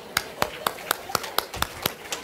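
A regular series of sharp clicks or taps, about four a second, over faint room murmur.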